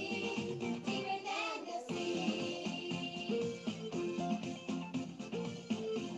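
A children's song: a child singing over backing music, the gliding voice clearest in the first two seconds, then steadier held notes.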